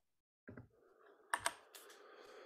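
A few faint computer keyboard clicks over a low hiss, the sharpest ones coming in quick succession a little past the middle.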